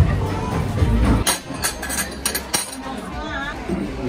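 Arcade basketball hoop game with loud music and basketballs thudding; about a second in it gives way to a few sharp clinks of dishes and cutlery over a murmur of voices.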